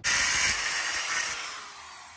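Ryobi angle grinder with a thin cut-off wheel cutting through the steel mount plate of a transmission crossmember, a harsh high cutting noise that starts suddenly, then fades in the second half with a faint falling whine as the cut finishes.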